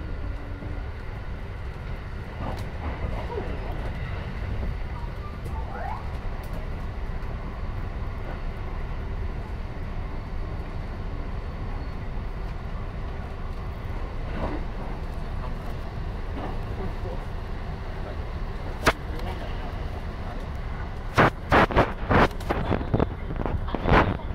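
Running noise of a JR 223 series 1000 electric train heard from inside the car: a steady low rumble of wheels on rail. Near the end comes a quick run of sharp clacks as the wheels cross track joints.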